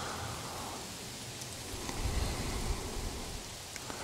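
Light rain falling in woodland, a soft, even hiss, with a low rumble swelling about halfway through.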